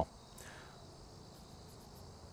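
Faint, steady trilling of crickets.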